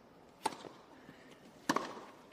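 Tennis balls struck by rackets on a grass court: a serve hit about half a second in, then the return, a louder crack, a little over a second later.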